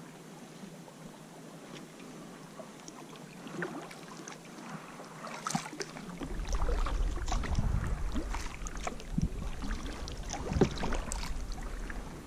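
Kayak paddle strokes: the blade dipping into and pulling through the water, with small splashes and drips, starting a few seconds in. From about halfway on, a low rumble runs under the splashes.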